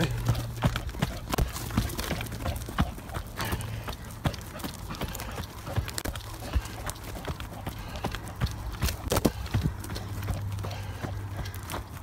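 Running footsteps on a soft dirt and bark-mulch trail: a quick run of dull thuds, about three a second, with a steady low rumble beneath.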